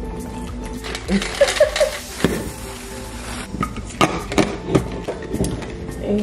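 Background music over a hiss and a scatter of sharp knocks and clinks: ice cubes going into a plastic tumbler.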